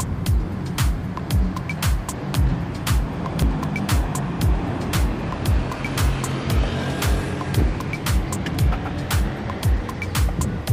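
Music with a steady beat: a heavy kick drum about two times a second, with hi-hat clicks between the strokes.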